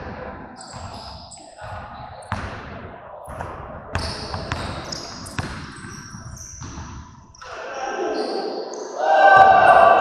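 A few sharp knocks or thuds with short high-pitched chirps. Voices get louder near the end.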